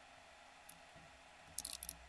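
Quiet room tone, broken about one and a half seconds in by a quick run of about five small clicks from the computer being operated, with one lone click a little earlier.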